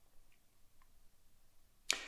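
A quiet pause in a reader's voice, with a couple of faint small ticks, ending in a quick, sharp intake of breath through the mouth just before he speaks again.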